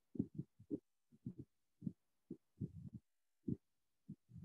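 Faint, irregular soft low thumps, about a dozen in a few seconds.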